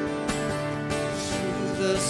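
Steel-string acoustic guitar strummed steadily as accompaniment to a worship song, with a man's singing voice coming in near the end.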